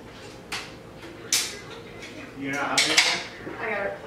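Cutlery and dishes clinking at a meal table: two sharp clinks in the first second and a half, then a busier clatter near the end, with some low voices.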